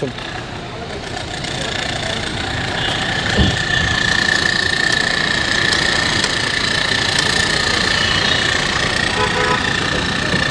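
A vehicle engine running steadily, with a steady high whine over it and one short thump about three and a half seconds in.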